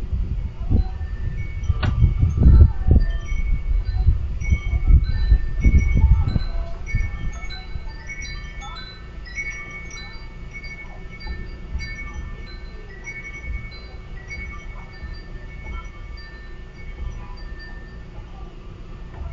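Chimes ringing irregularly, a scatter of clear high tones at different pitches that keep sounding through the whole stretch. Under them is an uneven low rumble, loudest in the first six or seven seconds, then dying down.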